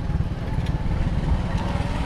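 A small motorcycle's engine running at low speed, a low, uneven rumble.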